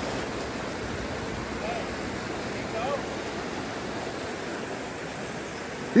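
Steady rush of fast-flowing river water churning over rapids.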